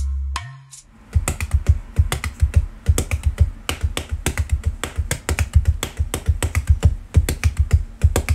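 Bare feet beating and slapping on a wooden floor in a fast, uneven run of thuds, several a second, starting about a second in.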